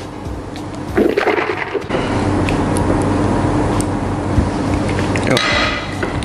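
A man drinking water from a glass mug, then a steady, dense noise that holds for a few seconds.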